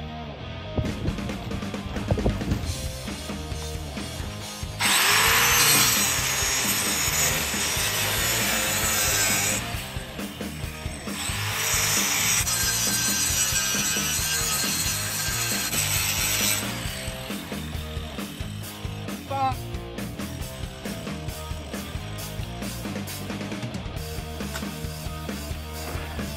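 Corded electric drill boring out a hole in the steel trailer tongue, run in two bursts of about five seconds each with a short pause between, the bit grinding through metal. Background music plays throughout.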